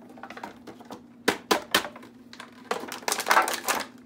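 Small items from a craft kit being handled in a box: a few sharp clicks and knocks about a second in, then a dense burst of crinkling and clicking near the end, like plastic packaging being pulled out.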